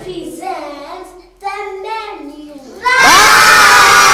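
A group of young children shouting and cheering together, bursting in loudly and all at once about three seconds in, after a few voices talking.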